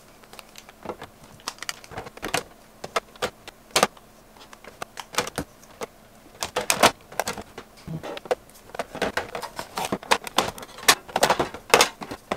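Plastic makeup compacts clicking and clacking against one another and against the clear acrylic drawer as they are packed back into rows. The sharp clicks are scattered at first and come thicker in the second half.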